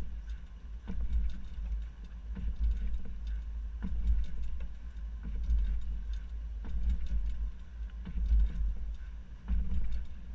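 Uneven low rumble of wind buffeting and road noise on a camera riding at the back of a moving car. Scattered light knocks and clicks come from the bike and its platform hitch rack jostling as the car drives.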